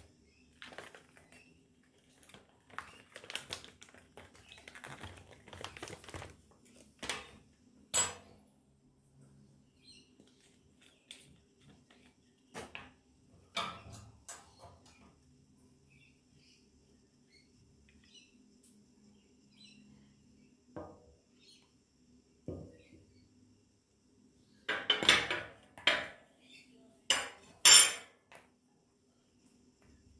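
Metal spoon scraping and clinking against a powder bag and a small plastic cup as chromium oxide powder is scooped and tapped in, in scattered short clicks with quiet gaps. A sharp click comes about eight seconds in, and a cluster of louder knocks and clinks near the end.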